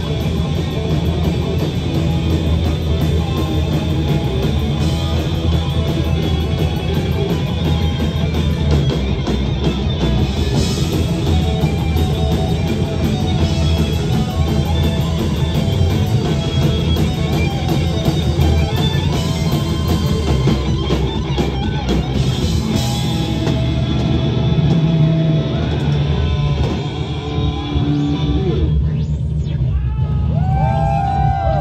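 Heavy metal band playing live, with distorted electric guitars over a drum kit, captured by an audience recording in a small club. The song winds down near the end.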